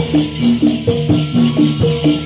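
Javanese gamelan music for a jathilan dance: metallophone notes struck in a fast, repeating stepped pattern, with a steady jingling rattle over the top.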